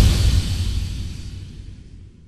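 The tail of a boom sound effect fading out steadily over two seconds, its low rumble lasting longest.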